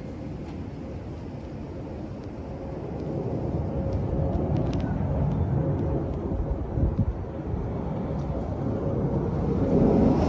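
Jet airliner flying overhead, its engine noise a low rumble growing steadily louder as it approaches, with a faint steady hum in it.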